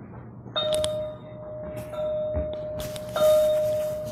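A steady ringing tone at one pitch that starts abruptly three times, each time with a short bump or rustle, and rings on between the starts.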